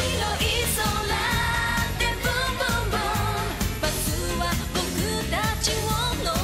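Female J-pop group singing live into handheld microphones over a dance-pop backing track with a steady bass beat.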